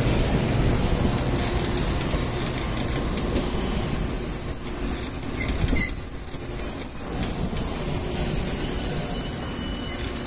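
A passing train's wheels squealing: one high, steady squeal over the rumble of the cars, growing loudest about four seconds in and fading near the end.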